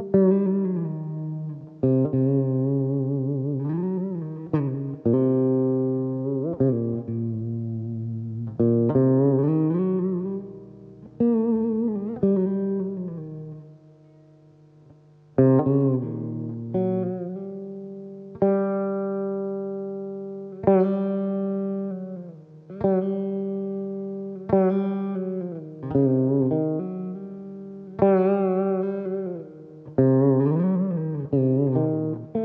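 Solo Saraswati veena: plucked notes that ring and fade, with many sliding, bending pitches between and within notes. About halfway through, the playing pauses briefly before the plucking resumes.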